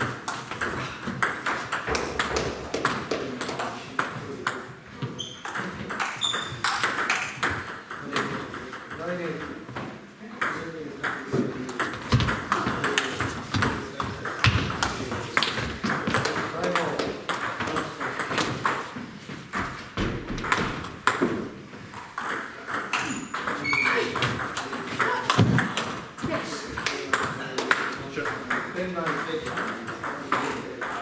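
Table tennis balls clicking off bats and the table in rapid rallies, with more ball strikes from other tables at once. Indistinct voices run underneath.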